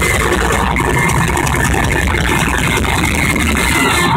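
Loud live rock band and arena crowd heard through a phone microphone, blurred into one dense, steady wash of sound.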